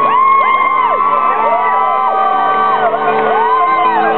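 A crowd of fans singing and whooping along over a strummed acoustic guitar, many voices overlapping.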